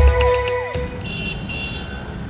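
Background score ends with falling sweeps under a second in. It gives way to steady city road-traffic noise with a short, high tone sounding briefly.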